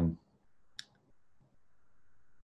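A man's drawn-out 'um' trailing off, then faint hiss and a single short click about a second in.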